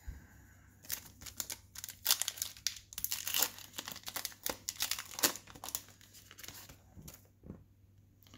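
Foil wrapper of a 2020 Topps Fire baseball card pack being torn open and crinkled in the hands: a dense run of sharp crackles that thins out after about five seconds into a few softer rustles.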